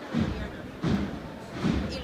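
Nearby spectators talking, with three dull low thumps about 0.7 s apart.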